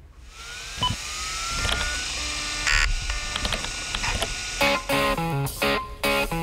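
Title-sequence music and sound effects. A rising whoosh with a gliding tone and a few clicks builds for the first few seconds, with one loud hit near the middle. Rhythmic music with regular punchy chords kicks in about four and a half seconds in.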